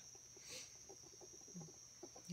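Near silence: a faint, steady high-pitched insect drone, with a few faint short sounds.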